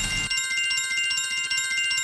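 Online live-casino dice game's sound effect: a fast, trilling bell-like chime on several high pitches, marking lightning multipliers landing on numbers. A low rumble fades out in the first half-second.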